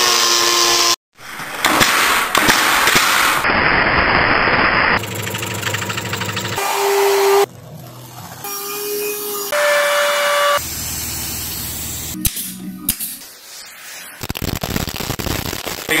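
Short workshop clips spliced together, each cut off abruptly: first an angle grinder with a carving disc cutting into wood, stopping dead about a second in, then a string of other shop noises that change every second or two.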